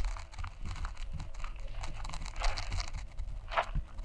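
Irregular rustling and crunching on dry, gravelly ground over a low rumble.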